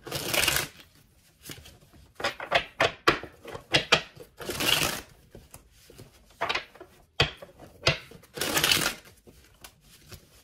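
Tarot deck being shuffled by hand: three half-second rushes of cards about four seconds apart, with sharp taps and snaps of cards between them.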